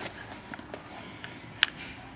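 Quiet room with faint handling noises as hands press and shift carpet, and one sharp click about one and a half seconds in.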